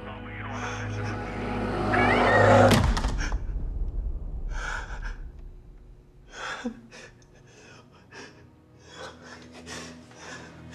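Horror film score swelling to a loud peak and cutting off about three seconds in, with a sharp clack as the wall phone's handset goes back on its cradle. After that, a man's short gasping sobs, several breaths spread over the rest.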